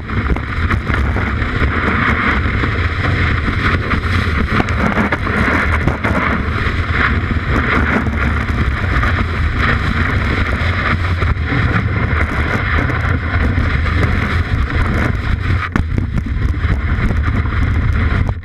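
Snowboard-mounted action camera at speed: a steady loud rush of wind on the microphone over the rumble and hiss of the board's base running through snow, with snow spray churned up behind the board.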